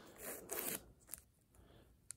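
Faint scraping and rubbing of hard plastic graded-card slabs being handled, mostly in the first second, with a small tick a little after.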